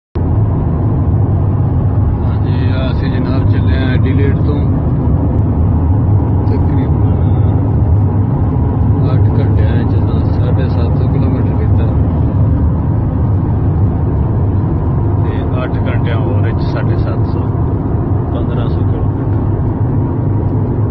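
Car driving along a highway, heard from inside the cabin: a loud, steady low rumble of tyres, engine and wind.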